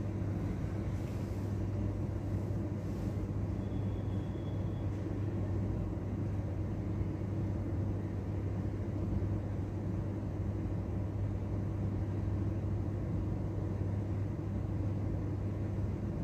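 Steady low hum and rumble of room background noise, unchanging throughout.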